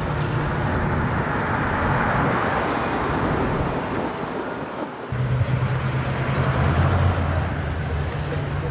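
V8 car engines running as cars cruise slowly past, a two-tone 1955 Chevrolet and a modern Dodge Challenger among them, with road and tyre noise swelling as they go by. About five seconds in, the sound breaks off suddenly and gives way to a steadier, deeper engine note.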